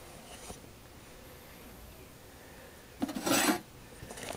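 Quiet room tone, then about three seconds in a brief rasping scrape, like a steel knife blank sliding across a metal bench top.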